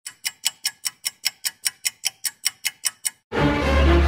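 A rapid, even run of sharp ticks, about five a second, for about three seconds, like a clock-tick sound effect under a channel intro. After a brief pause, music with a heavy bass starts abruptly near the end.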